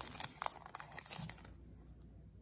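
A trading-card booster pack wrapper crinkling and tearing as it is opened by hand. A quick run of sharp crackles fills the first second and a half, then it goes to faint handling.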